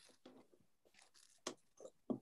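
Faint crinkling and rustling of a clear plastic bag of damp soil being handled, a few brief crackles spread over the two seconds.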